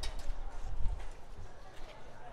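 Footsteps on a paved street: irregular short knocks over a low rumble of street noise.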